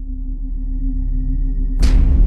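Logo intro music: a low, steady drone swells in loudness, then a sudden whooshing hit lands near the end and leaves a deep rumble.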